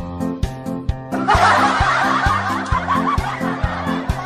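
Background music with a steady, even beat; about a second in, loud laughter joins it and carries on over the music.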